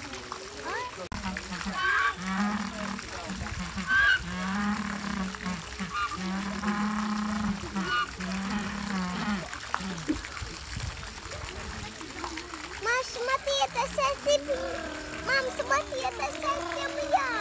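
A banded penguin braying: a series of loud, donkey-like calls, each note longer than the last, in its head-up, open-beaked display call. Water from a hose splashes steadily into the pool beneath.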